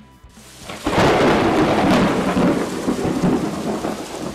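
A thunder sound effect: a crash of thunder that builds within the first second into a loud, rolling rumble with a few sharp cracks, then slowly fades.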